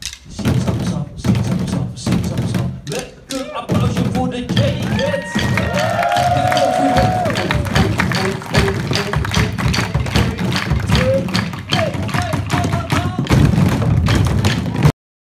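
A group of children drumming with sticks on plastic buckets: scattered strokes at first, then a dense, continuous clatter of beats from about four seconds in, with voices calling out over it.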